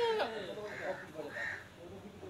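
A bird calling twice in the background, two short calls about half a second apart.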